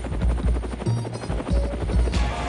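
Helicopter rotor chopping in fast, even, heavy thumps, mixed with a music track.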